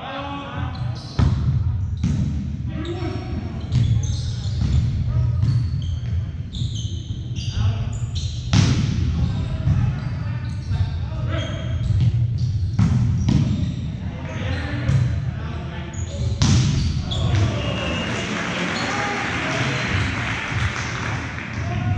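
Volleyball serve and rally in a gymnasium: a string of sharp slaps of hands on the ball, ringing in the hall, over a steady din of players' shouts and spectators' voices. Near the end the crowd noise swells, as at the close of a point.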